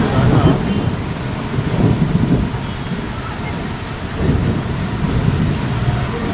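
Heavy rain pouring down, with several low rumbling swells.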